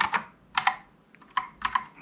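Typing on a Kinesis Advantage 360 split ergonomic keyboard with Cherry MX Brown switches. A few keystrokes come about half a second in, then a quick run of them near the end.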